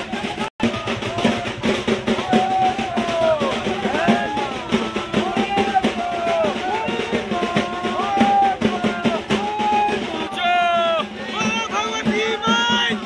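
Festival music with fast, steady drumming under a wavering melodic line, amid a crowd. The sound cuts out for an instant about half a second in, and shrill, quavering cries rise over it near the end.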